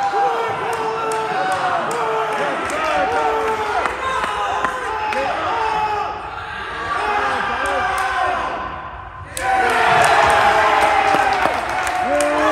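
Teammates shouting encouragement, short repeated calls, over thumps of hands striking a pommel horse. About nine seconds in, a sudden louder burst of cheering and shouting as the routine ends with the dismount.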